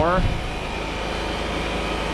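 A steady mechanical drone with a low hum running under it, even in level throughout, after a last spoken word at the start.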